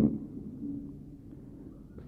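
Pause in a man's spoken prayer: the end of his last word dies away at the start, then only faint, low room tone until he speaks again.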